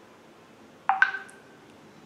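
A two-note electronic chime about a second in: a short lower tone, then one about an octave higher, each fading within half a second.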